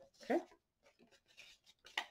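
A single spoken word, then near silence with faint handling of paper on a paper trimmer board and a short sharp click near the end.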